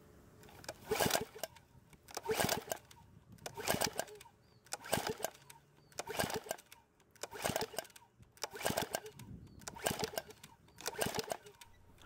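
Recoil pull-starter of a PowerSmart mower's small OHV engine pulled about nine times, roughly once a second, each pull a short whir as the engine turns over without firing. It is cranking for a compression test, with a gauge in the spark-plug hole. The gauge reads only 75 psi, which is held low by the engine's compression release.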